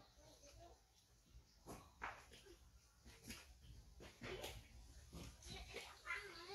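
Faint, short whimpering squeaks from a baby macaque, about half a dozen spread through the few seconds.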